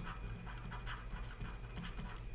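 Faint, quick scratching and tapping of a pen stylus on a drawing tablet as a word is handwritten, over a low steady hum.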